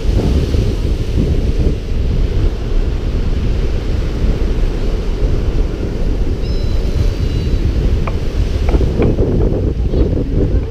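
Steady wind buffeting the microphone over the wash of small waves running up the sand, most of the noise a low rumble.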